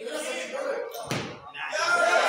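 A single heavy thud a little over a second in as a weightlifter drives a loaded barbell from the front rack into a split jerk, feet and bar landing on the wooden lifting platform. Voices are heard around it, growing louder near the end.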